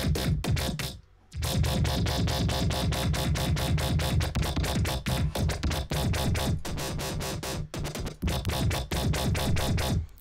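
Dubstep/electro bass patch from the Native Instruments Massive synthesizer playing back, an LFO-modulated bass with a heavy low end, chopped into a fast, even stream of pulses. It cuts out briefly about a second in, then resumes.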